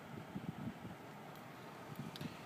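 Faint steady background noise inside a car cabin with the engine idling quietly, and a few soft taps about half a second in.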